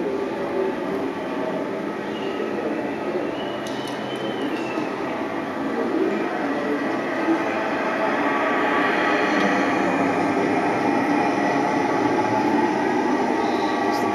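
Steady rumbling room noise with a faint murmur of voices, growing a little louder about halfway through, and a brief gliding whistle-like tone about four seconds in.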